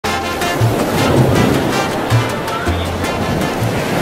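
Intro music with a steady beat and low bass notes, in a dense mix that may carry an ocean-wave sound.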